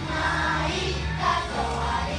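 A children's choir of fourth graders singing together over an instrumental accompaniment with a steady bass.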